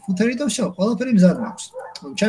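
A person speaking continuously, with a short pause near the end.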